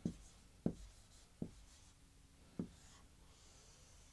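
Marker writing on a whiteboard: quiet strokes, with four short knocks spread through the first three seconds.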